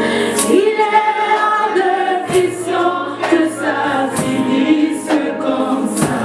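Live gospel worship song: a woman leads the singing into a microphone, backed by other singers and keyboard, over a steady beat about once a second.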